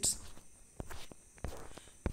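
A few soft clicks or knocks, about four, in the second half of a pause in the talk.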